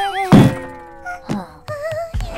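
Cartoon sound effects: a loud thunk about a third of a second in, followed by a held musical tone that slides slowly down. A softer knock comes about midway, and a wavering cartoon voice is heard at the start and again near the end.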